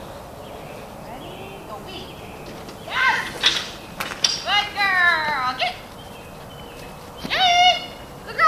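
A dog's high-pitched, excited barks and yelps while running agility weave poles, in three bursts: a short one about three seconds in, a longer cry falling in pitch around the middle, and another short one near the end.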